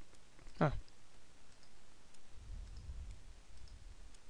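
A few faint computer mouse clicks, spaced irregularly, with a faint low rumble around the middle.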